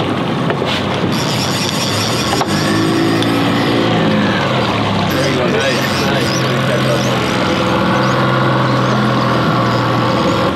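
Boat motor running steadily under wind and water noise.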